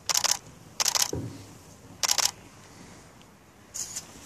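Camera shutters clicking in four short, rapid bursts about a second apart.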